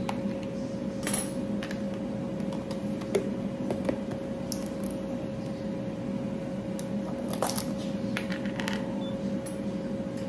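A metal fork scooping thick hummus out of a plastic tub, with a few sharp clicks and taps of fork on tub and bowl, over a steady kitchen-appliance hum.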